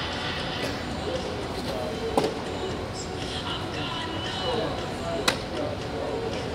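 Two sharp pops of a thrown baseball smacking into a leather glove, about three seconds apart, the second louder, over a murmur of voices.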